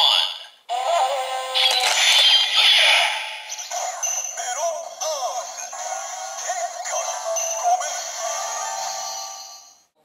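Kamen Rider Gaim Sengoku Driver toy belt, with the Melon Lockseed locked in, playing its electronic transformation music with synthesized voice calls. The sound comes through a small tinny speaker with no bass. It plays about a second in, as the lockseed is opened, and stops just before the end.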